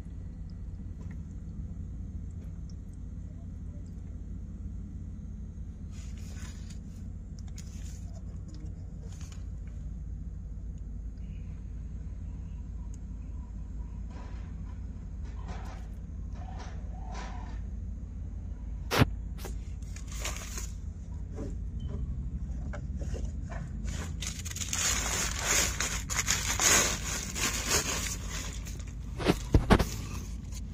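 Engine oil mixed with flood water draining in a steady stream from the oil pan into a drain pan, a low continuous pour. Scattered clicks, one sharp knock a little past halfway, and a spell of louder scraping rustle near the end.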